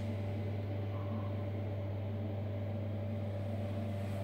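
Steady low electrical hum with a light hiss, from a bathroom extractor fan running.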